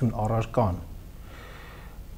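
A man speaking Armenian breaks off after under a second, then a pause with a soft intake of breath.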